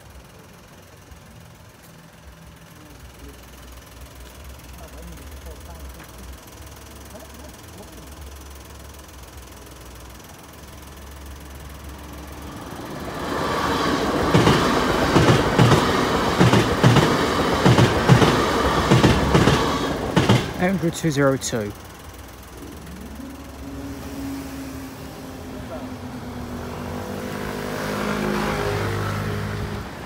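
A bi-mode LNER Class 800 Azuma train on diesel power approaching and passing over the level crossing, its wheels clattering rhythmically over the rail joints. The sound builds and then cuts off sharply as the last carriage clears, about two-thirds of the way through. A quieter mechanical hum follows as the crossing barriers rise.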